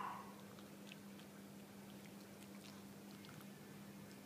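Faint, scattered clicks of a small dog chewing a treat taken from a hand, over a steady low hum, after a brief soft sound right at the start.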